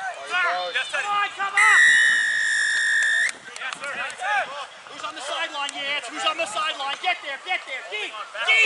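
Referee's whistle blown once in a single long blast lasting nearly two seconds, starting about one and a half seconds in and stopping play at a ruck. Players' shouting goes on around it.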